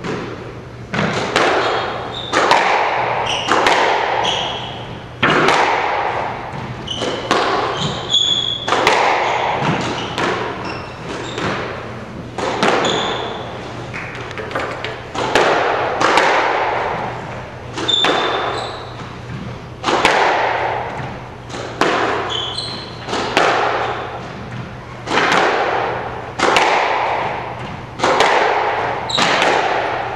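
Squash rally in a glass-backed court: sharp, echoing cracks of the ball off rackets and walls about once a second, with short high squeaks of court shoes on the hardwood floor.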